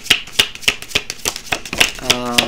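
A deck of tarot cards being shuffled by hand. It makes a quick run of sharp card snaps, about three or four a second.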